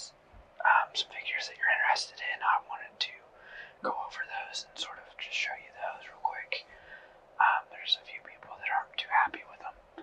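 A person speaking in a whisper, in a continuous run of breathy syllables.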